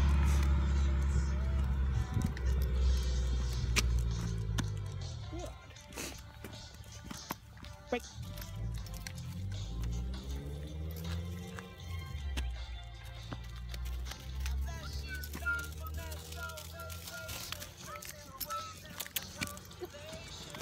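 A car driving past on the street close by, its engine loudest at the start and fading away over the first few seconds, followed by fainter passing traffic.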